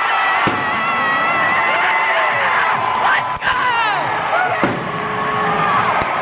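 Baseball stadium crowd cheering, with a fan yelling close by.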